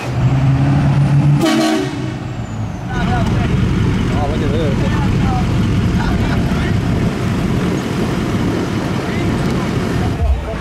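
A vehicle horn sounds steadily for about a second and a half. From about three seconds in, a pickup truck's engine runs loudly as it drives through soft sand.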